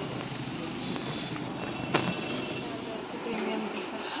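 Steady street background noise of road traffic, with faint voices and a single sharp click about two seconds in.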